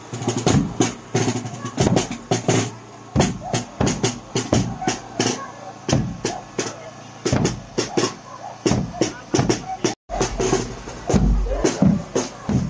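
Marching drum-and-lyre band playing: a bass drum and struck percussion beating out a quick, uneven run of strikes, with crowd voices underneath. The sound cuts out for an instant about ten seconds in.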